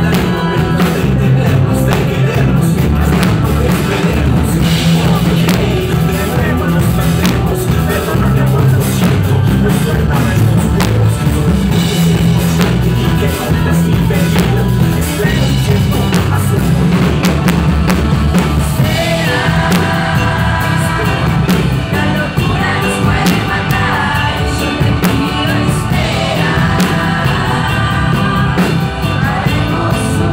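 Live rock band playing loudly: electric guitars, bass and drum kit, with a singer's voice clearer in the second half.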